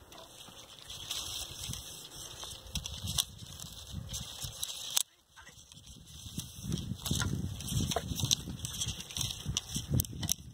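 Hoofbeats of a grey horse galloping toward the listener on a grass track, growing louder through the second half as it approaches.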